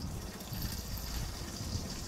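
Strong wind buffeting the microphone in an uneven low rumble, over a faint trickle of light distillate oil running from a tube into a plastic container.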